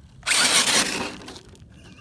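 A burst of gritty scraping, just under a second long, as the RC crawler's knobby tires are cleaned of dirt and grit.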